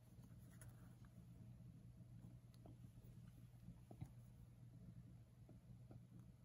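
Near silence: a faint steady hum with a few soft ticks and scratches of hand sewing, needle and thread being worked through fabric in blanket stitch. The most distinct tick comes about four seconds in.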